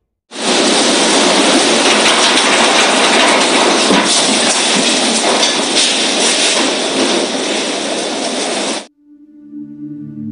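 Loud, steady rush of violent tropical-cyclone wind, cutting off abruptly about nine seconds in.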